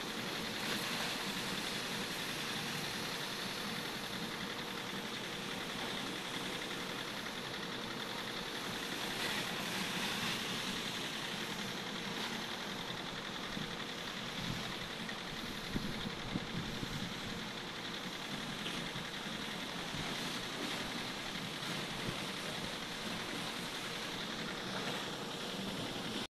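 Pressure washer running, its water jet spraying steadily onto a car's body panels and windows.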